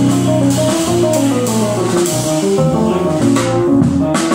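A jazz combo playing an instrumental passage: melodic lines on electric keyboard over a drum kit played with sticks, with steady cymbal shimmer.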